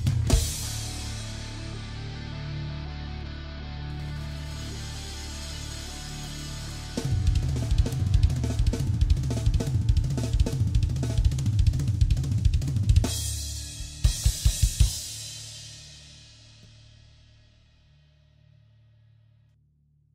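Drum kit playing the end of a song: a cymbal wash rings over held low notes, then a dense run of drum and cymbal hits, a crash, and four separate final accents. The cymbals then ring out and fade to silence.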